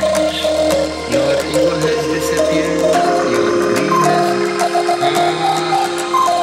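Psybient electronic music: a repeating synth melody of short notes over a held low bass that drops out about halfway, with light, regular percussion clicks.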